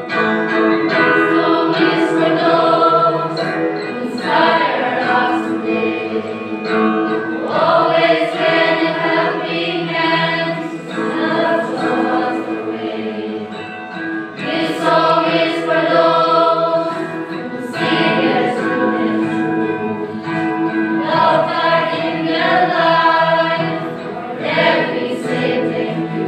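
A mixed choir of teenage students, boys and girls, singing a song together, phrase after phrase.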